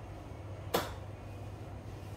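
A single sharp slap of a hand on the face, a little under a second in, during a facial massage, over a steady low hum.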